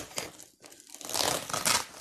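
Plastic wrap and gift paper crinkling as a wrapped present is handled and opened, the crinkling loudest in the second half.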